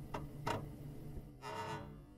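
Intro sound effects: two sharp ticks like a clock in the first half second, then a short pitched tone with a musical ring about a second and a half in.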